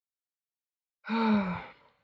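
A single sigh by a person's voice, about a second in, voiced and falling gently in pitch. The first second is silent.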